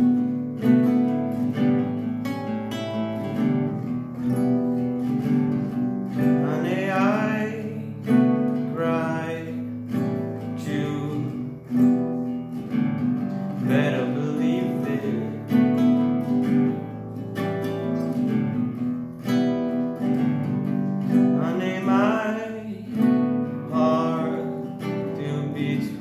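Acoustic guitar strummed in a steady rhythm, with a man singing over it in several phrases.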